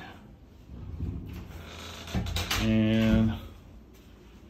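A man's short wordless hum of under a second, about three seconds in, after some faint rustling and a couple of clicks.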